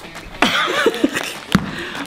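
Food packets crinkling in a man's arms as he carries groceries, with a short chuckle, then a sharp knock as a jar is set down on a wooden worktop about one and a half seconds in.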